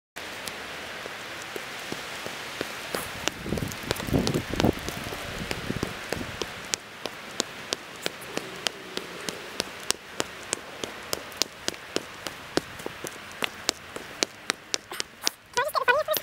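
Rain falling, with individual drops striking close by as sharp, irregular ticks, several a second, over a steady hiss. A louder stretch of low thumps comes about four seconds in.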